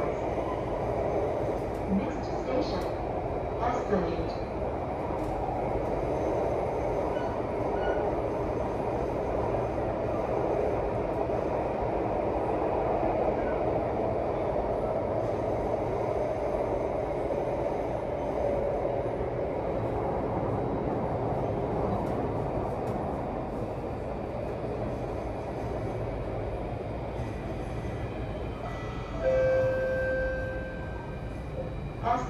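Singapore MRT Circle Line train running between stations, heard from inside the carriage: a steady rumble and rush of wheels and traction motors. Near the end a steady tone sounds over it.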